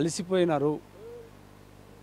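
A man speaking Telugu: a short phrase in the first second, then a pause.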